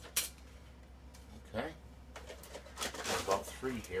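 Dry lasagna noodles being handled: a sharp click against a china baking dish just after the start, then rustling as more noodles are pulled from their cardboard box, with a few muttered words.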